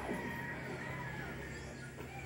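Faint bird calls, a few short chirps, over a low steady hum.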